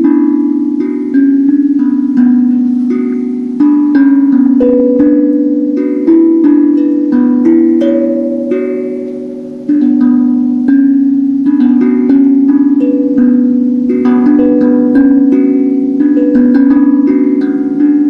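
Handpan (hang drum) played by hand: single struck metal notes that ring and overlap in a slow, flowing melody. One note is left to fade for a moment before a firm strike about halfway through.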